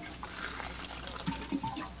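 Radio-drama sound effect of water being drawn from an office water cooler: a faint trickle of water with a few small clicks between about one and two seconds in.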